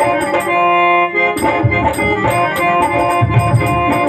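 Live folk-drama band music: an electronic keyboard plays a sustained melody over tabla and hand percussion. The drums drop out briefly under a held keyboard chord, then come back in.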